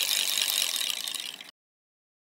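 Editing sound effect of rapid, high-pitched clicking for a scrambling-text title animation. It fades and cuts off suddenly about one and a half seconds in, leaving dead silence.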